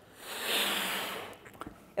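A person blowing one long breath into a rubber balloon to inflate it: a rush of air lasting just over a second.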